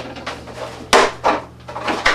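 Vacuum-formed styrene plastic sheet being lifted and flexed to free it from its molds, with one loud sharp crack about a second in and two smaller knocks after it.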